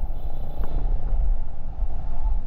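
Motor scooter riding through city traffic: its engine running under a steady, loud low rumble of wind on the microphone.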